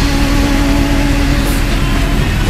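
Motor traffic on a wet city street, with a motorcycle engine running, heard as steady loud noise with a low rumble and a steady hum.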